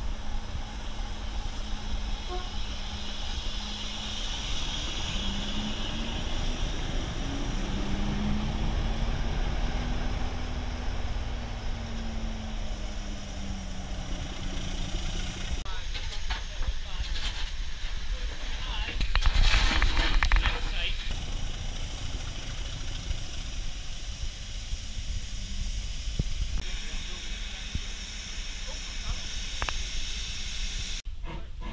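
Railway engines standing at a station: a steady low rumble with a hum that rises and falls in pitch for the first half, then the hiss of a standing steam locomotive. A loud burst of steam hiss comes about two-thirds of the way through.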